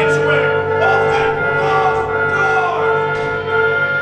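Orchestral accompaniment from the musical's score: a held chord comes in at the start and sustains, with wind instruments, and a voice over it in the first half.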